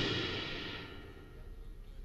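The last cymbal crash and chord of a smooth-jazz trio of drums, electric bass and keyboard ringing out and fading away at the end of a tune.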